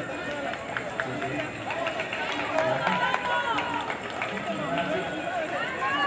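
Several people's voices talking and calling out over each other, with no clear words.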